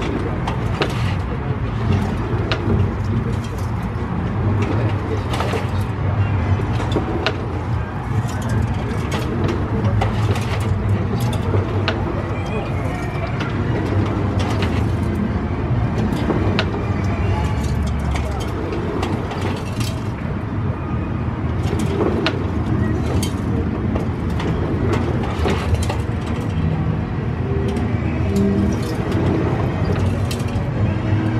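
Outdoor amusement-park ambience: a steady low rumble with distant, indistinct voices, and frequent sharp clicks and knocks scattered through it.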